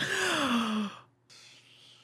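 A man's voiced sigh, exhaled and falling steadily in pitch over about a second, followed by a quieter breath out.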